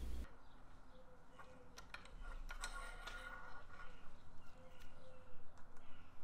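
Faint outdoor background with a bird calling softly in short repeated low notes, and a few light clicks.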